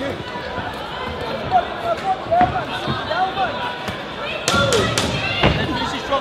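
Spectators shouting at a boxing bout, with a few long drawn-out calls, and sharp thuds of gloved punches landing, clustered near the end.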